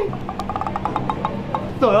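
Soft background music with a fast run of light, evenly spaced ticks, about eight a second, like a wood-block sound effect; a man exclaims near the end.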